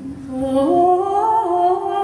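Slow, wordless singing or humming: long held notes that step upward in pitch.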